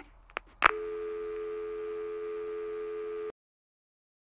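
Two clicks as a phone call is hung up, then a steady telephone dial tone of two close notes that sounds for about two and a half seconds and cuts off suddenly.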